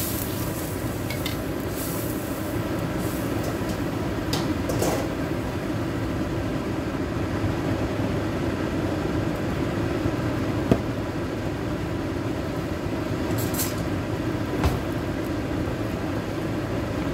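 Steady low rumble and hiss of a gas burner heating spiced broth simmering in a carbon-steel wok, with two short sharp clicks in the second half.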